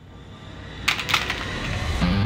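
A quick run of about four light plastic clicks and clatters about a second in, like single-serve coffee pods knocking together, over a low rumble that swells.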